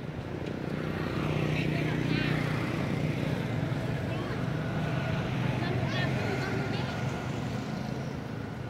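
A motor vehicle's engine running with a steady low hum that swells about a second in and eases off near the end, with a few faint, short high-pitched chirps over it.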